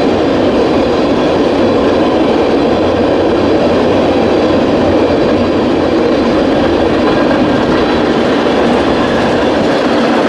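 Tank cars of a fast-moving freight train rolling by, their steel wheels running on the rails in a steady, loud rumble.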